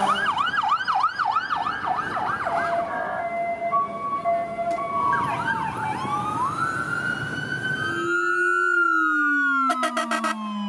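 Emergency-vehicle sirens edited together: first a fast yelp cycling about three times a second over traffic rumble, then steadier tones and slower wailing sweeps. About eight seconds in the sound cuts to a low siren tone slowly falling in pitch, with a higher tone gliding down beside it, as a siren winds down.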